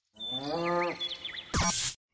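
A low, drawn-out moo lasting under a second, part of a short animated logo sting, followed by a few quick high whistling glides and a brief loud burst near the end.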